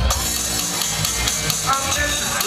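Hip-hop backing track played loud through a bar's PA: a heavy drum beat with a rock guitar riff, before the rapping comes in.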